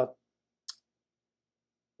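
A single short, sharp click about two-thirds of a second in, otherwise near silence between words.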